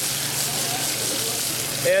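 Sculpin fillets sizzling steadily in hot grapeseed oil in a sauté pan.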